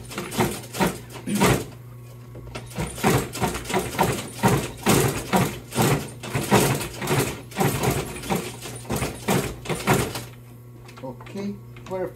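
Consew 226 walking-foot industrial sewing machine stitching through vinyl. It makes a quick run of needle strokes, several a second, over the steady hum of its motor, pauses briefly about two seconds in, and stops near the end.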